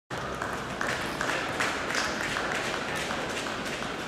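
Spectators clapping in a sports hall, a dense patter of claps over crowd noise.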